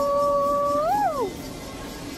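A woman's long, held "woo" cheer: one steady high note that swoops up and falls away about a second in, over a background din of the party room.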